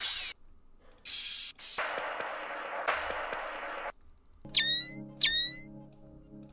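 Sound-effect samples auditioned one after another in a music program, with short silences between them. They run as brief hiss bursts, then about two seconds of static-like noise, then two quick rising zaps over a low steady hum.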